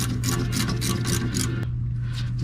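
Light metallic clicks in quick succession, about five a second, from a wrench working a brake caliper bolt. They stop shortly before the end, over a steady low hum.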